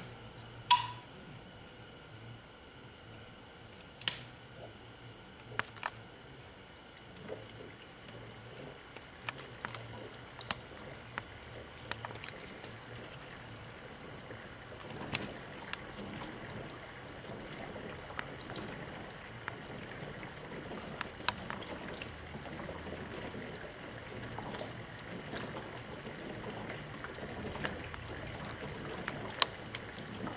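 A switch clicks sharply about a second in, then water bubbles and gurgles with scattered small pops, growing gradually louder as the HHO electrolysis cell starts producing hydrogen-oxygen gas that runs through the bubbler and out of an air stone in water.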